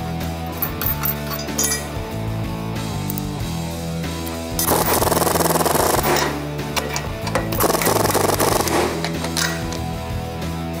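Background music with a steady bass line. Twice, about halfway through and again near the end, a pneumatic air ratchet runs in a burst of about a second and a half, driving bolts into the lower control arm mount.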